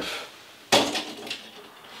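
A kerosene hurricane lantern being lit: one sudden sharp sound about two-thirds of a second in that fades quickly, then a smaller click.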